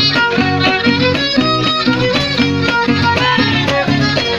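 Live string trio playing a cuadrilla dance tune: a violin carries the melody over the steady rhythmic strumming of a small guitar and an acoustic guitar.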